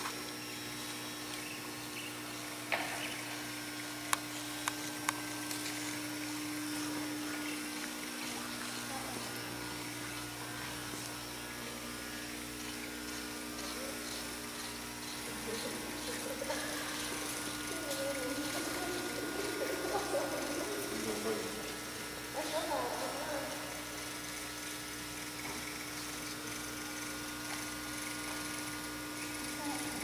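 Room tone of a large hall with a steady low hum throughout. Faint, indistinct voices talk in the background for several seconds around the middle, and a few light clicks come in the first few seconds.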